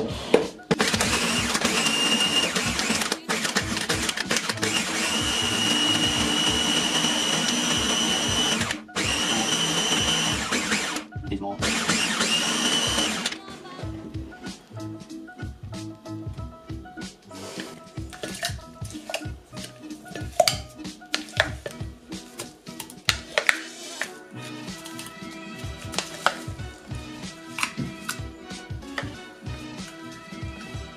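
Ninja blender motor running hard as it crushes ice into slush. It runs in several long pulses with brief stops, then cuts off about 13 seconds in. After that come scattered clicks and knocks over background music.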